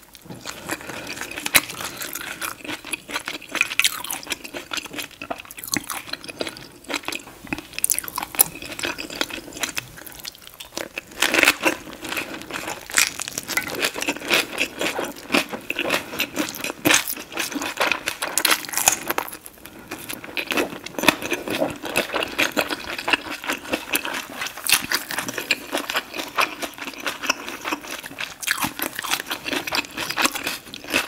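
Close-miked chewing of a fresh rice-paper spring roll with lettuce and herbs: moist crunching of the leaves and wet mouth sounds, a steady run of small crackles with a few louder crunches.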